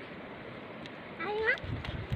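A lamb bleating once, a short rising call about a second in.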